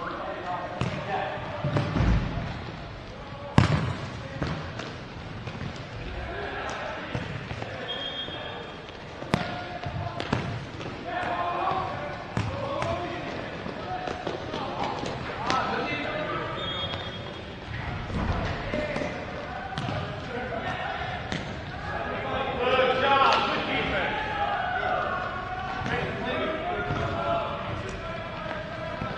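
Futsal ball being kicked and bouncing on a hard indoor court: sharp thuds every few seconds, the loudest about three and a half seconds in. Players' shouts and chatter run underneath.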